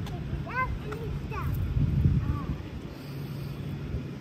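A few short voice exclamations in the first second and a half, each rising then falling in pitch. About two seconds in, a gust of wind buffets the microphone. A steady low hum runs underneath.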